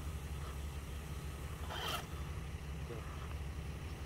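Low, steady whir of an RC4WD TF2 K5 Blazer scale truck's electric motor and drivetrain as it backs up in the mud, with a short scratchy noise about two seconds in.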